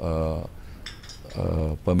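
A man speaking to reporters, two short stretches of speech with a brief pause between.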